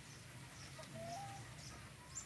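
Faint calls of free-range chickens: a short rising note about a second in, with a few faint high chirps around it.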